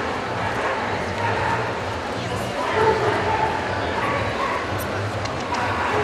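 Dogs barking and yipping over the steady chatter of a crowd in a busy dog-show hall.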